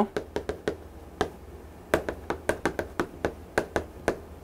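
Chalk tapping against a chalkboard while writing: an irregular run of short, sharp clicks, one per stroke, with a brief pause in the first half.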